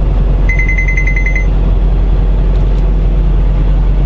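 Semi truck's diesel engine and road noise droning steadily inside the cab. About half a second in, a rapid run of high electronic beeps lasts about a second.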